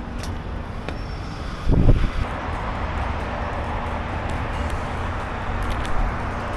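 Steady road-traffic noise in an open parking lot, with a low thump about two seconds in.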